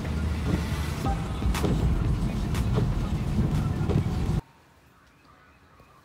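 Low rumble from inside a car in the rain, with scattered light taps, cutting off about four seconds in and followed by a quiet gap.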